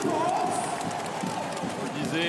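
Basketball arena crowd cheering just after a home-team three-pointer, with one drawn-out voice held above the crowd noise for about the first second.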